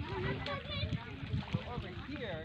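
Background voices of people talking and calling out, not close to the microphone, over a steady low noise.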